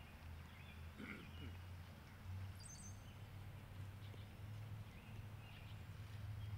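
Faint birdsong, scattered short chirps with a higher one about halfway through, over a low steady hum that grows slightly louder.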